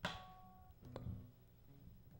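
Handling noise from an acoustic guitar and microphone stand being set up. A sharp knock rings briefly, and a few softer bumps follow about a second in.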